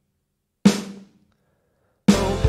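One hit of a soloed GarageBand snare drum sample run through a distortion plug-in: a sharp crack about two thirds of a second in, dying away over about half a second.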